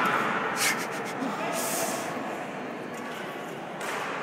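Badminton rally in a large echoing gym hall: a couple of sharp racket hits on the shuttlecock, about half a second in and again near the end, over a background of voices and room noise. A short high scuffing hiss comes between them.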